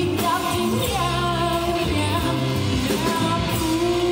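A live street band playing a rock-style song, with a singer singing into a microphone over an amplified electric guitar and steady low bass notes.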